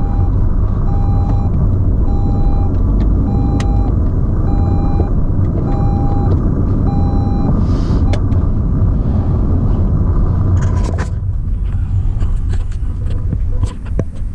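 Road and engine rumble inside a moving car's cabin, with a run of short, evenly spaced electronic beeps, likely a warning chime, for the first seven seconds or so. The rumble eases about eleven seconds in, and a few sharp clicks follow near the end.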